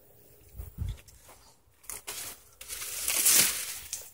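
Dried cane stalks and leaves rustling as they are handled and set into place. There are a couple of low thumps about a second in, then a longer, louder stretch of rustling in the second half.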